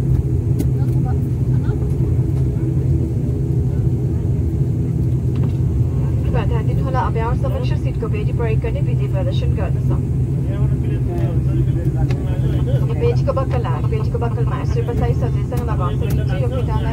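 Steady low drone of a high-wing turboprop airliner's engines and propellers, heard inside the cabin as the aircraft taxis. Voices talk over it from about six seconds in.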